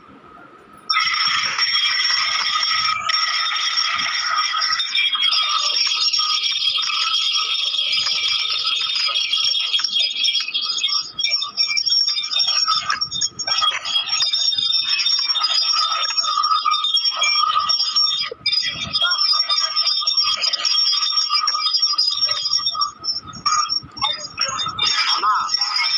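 Borewell drilling rig running, heard through a phone video call's audio: a loud, steady high-pitched whine over rushing noise, starting about a second in.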